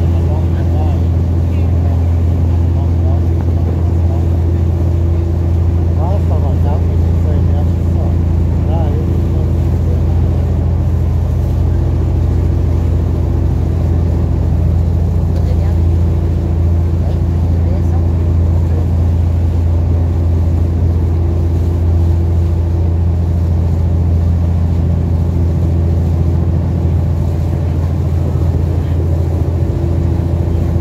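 Motorboat engine running steadily while the boat is under way: a constant, even low drone.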